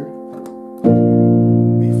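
Piano chords: a held F major chord (A–C–F–A) fades, then a little under a second in a B-flat major chord in a wide voicing (B♭–F–B♭–D–F–B♭) is struck and held.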